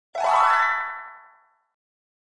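Short cartoon-style sound effect for an intro logo: a single pitched tone that starts suddenly, sweeps up in pitch, then rings and fades out within about a second and a half.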